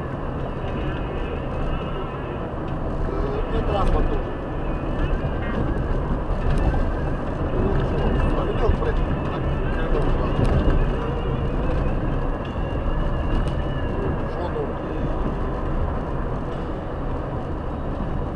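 Steady engine and road rumble inside a moving car's cabin, with voices over it.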